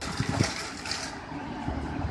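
Outdoor street ambience: a steady rushing noise with low rumbles.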